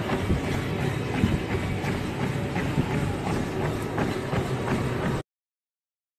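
Treadmill running under a runner: a steady belt and motor noise with the regular thud of footfalls on the deck, about two to three a second. It cuts off suddenly about five seconds in.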